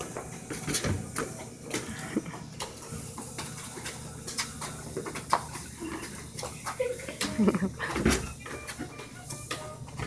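A soccer ball kicked about on concrete and sneakers scuffing and slapping on the slab: scattered sharp knocks and scrapes. A short voiced shout or squeal comes about seven and a half seconds in.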